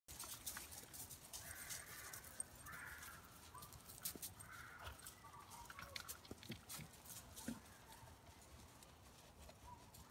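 Faint sounds of dogs playing in a gravel yard: scattered light clicks and scuffs, with a few short soft calls in the first five seconds.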